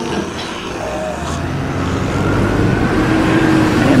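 Sound effect of a motor vehicle: engine noise that grows steadily louder, with a faint rising whine in the last couple of seconds.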